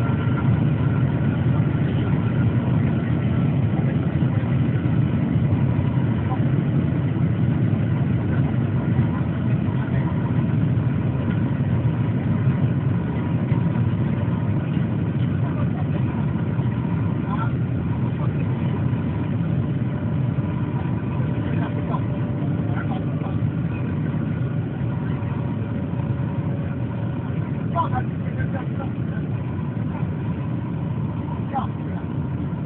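Steady low rumble of the Shanghai maglev train running at speed, heard inside the passenger cabin, easing off a little toward the end.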